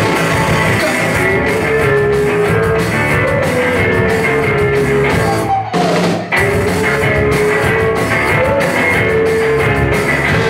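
Live rock band playing loud, with electric guitar and drum kit, broken by a brief stop about six seconds in before the band comes back in.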